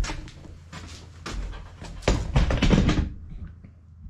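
A run of close clattering knocks and rattles, loudest and thickest about two to three seconds in, then dying away.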